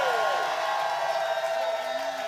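Many voices of a church congregation crying out together in loud prayer, their pitches sliding down, over a steady held tone.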